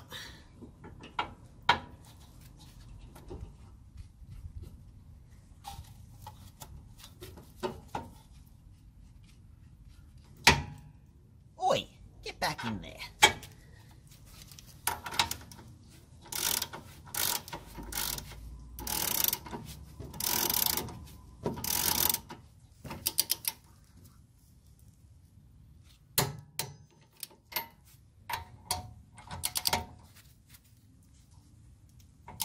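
Ratchet wrench and socket working the castellated nut on a new tie rod end: scattered clicks and clinks of metal tools, then a run of about eight ratcheting strokes, roughly one a second, through the middle, and more clicks near the end.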